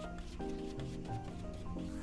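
A wide paintbrush rubbing house-paint primer onto stretched canvas in scratchy strokes, under background music of held notes.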